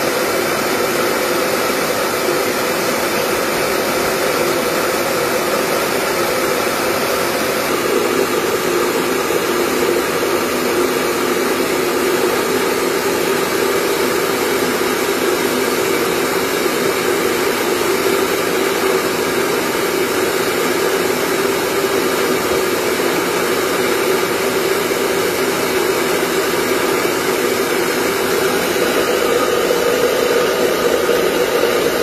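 Small household rice mill running steadily, milling paddy, with a loud even whirr. Its hum drops slightly in pitch about eight seconds in.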